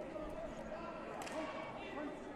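Indistinct voices of people talking across a sports hall, with a couple of short knocks just past the middle.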